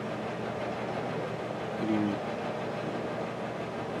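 Steady room noise, a constant hiss, with a single short, faint "mm" from a person's voice about two seconds in.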